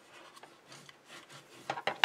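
Bone folder rubbed over folded, glued paper card to press the flaps down: several soft scraping strokes, with a couple of light knocks near the end.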